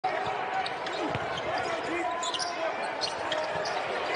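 Basketball game arena sound: a basketball bouncing on the hardwood court, heard against a steady background of crowd noise in a large hall.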